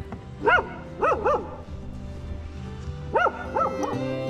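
A dog barking: two quick runs of three short, high yips, over background music.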